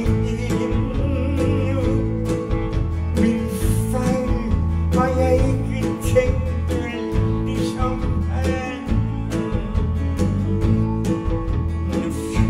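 A live folk-rock band playing a song: acoustic and electric guitars, bass, drums and keyboards, at a steady driving beat.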